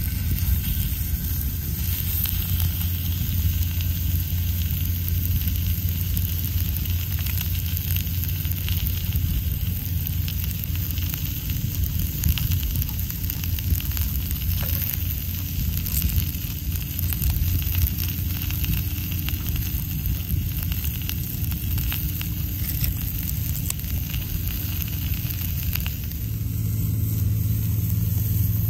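Beef steak sizzling on a small griddle pan over a wood-burning mini stove, with light crackles from the fire, over a steady low rumble.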